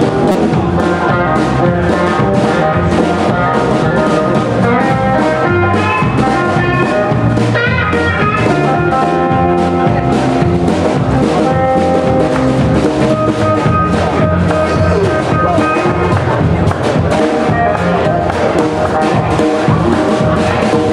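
Live blues band playing an instrumental passage: an electric guitar solo of quick, changing notes over a steady drum beat.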